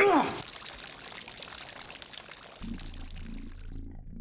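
A brief falling vocal cry, then a steady pour of water from a stone cherub fountain that fades out near the end. Low music with a slow pulse comes in about two and a half seconds in.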